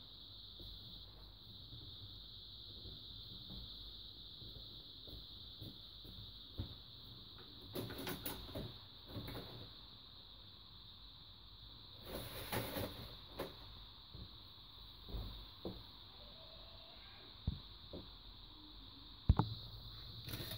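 Faint handling sounds as a plastic diffuser sheet is lifted off an LED TV's backlight: scattered scrapes and rustles, a louder patch about halfway through, and a sharp click near the end, over a steady faint hiss.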